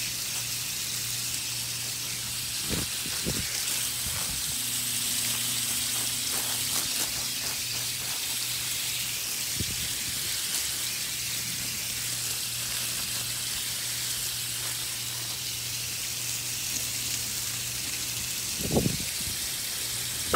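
Water spraying in a steady hiss onto leafy plants and mulch, with a few soft knocks now and then.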